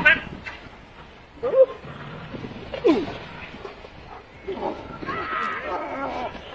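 A police dog growling and barking in short separate bursts while it leaps at and grips a man's arm in bite work, with people's voices and exclamations around it.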